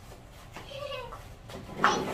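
A dachshund gives a short whine about half a second in. Near the end a cardboard box rustles loudly as it is pulled open.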